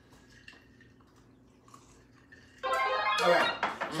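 Near silence for about two and a half seconds, then a person's voice comes in near the end, held on a steady pitch like a sung or drawn-out word.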